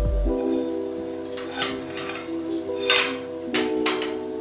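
Background music with steady tones, over a few light metallic clinks as a loose steel tube is knocked and fitted between the tubes of a welded steel frame; the loudest clink comes about three seconds in.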